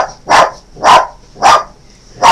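A dog barking repeatedly, about two barks a second, four barks in all.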